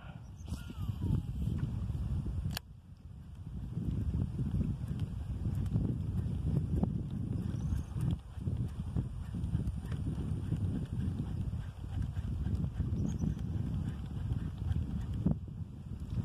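Wind buffeting the microphone: a fluctuating low rumble, with one sharp click about two and a half seconds in.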